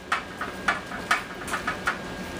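A metal fork raking through roasted spaghetti squash, shredding the flesh into strands: a run of short, irregular scrapes and clicks.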